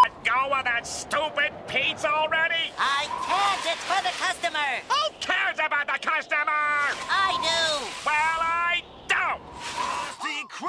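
Cartoon character voice: a run of short, high-pitched cries that slide up and down in pitch, with no clear words.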